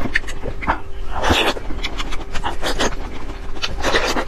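Close-miked ASMR eating sounds from a mouth working on soft jelly snacks: repeated wet clicks and smacks, with one longer breathy slurp about a second in.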